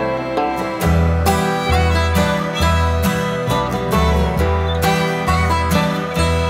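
Instrumental break in a country song: acoustic guitar and fiddle over a steady bass beat, with no singing.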